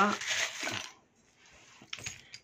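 Small charms rattling and clinking together as a hand rummages through them in a pot, then a few light clicks near the end.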